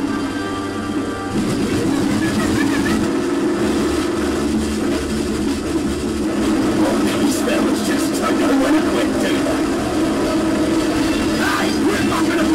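An animated truck's engine running steadily during a chase, mixed under background music.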